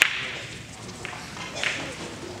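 Sharp click of billiard balls colliding, ringing briefly in a large hall, followed by two fainter clicks about one and one and a half seconds later.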